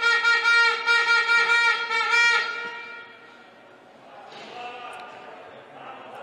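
A game horn or buzzer in a sports hall sounds one long steady blast that stops about three seconds in.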